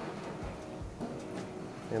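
Thin stream of hot water from a gooseneck kettle pouring into the wet coffee bed of a Kalita Wave dripper, a low steady wash, the last pulse of the brew; faint background music underneath.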